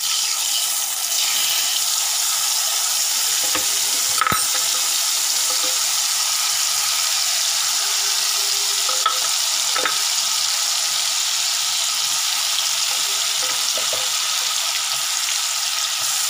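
Tamarind water with chilli powder and salt sizzling in hot oil in a pan, with the red chillies and curry leaves fried just before, as it is sautéed down. It is a loud, steady hiss, with a couple of faint clicks about four and ten seconds in.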